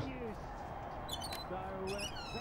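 A film scene's dialogue track: the tail of a man's spoken line, then faint background sounds of the room.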